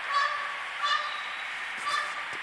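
An animal calling: three short, pitched calls about a second apart.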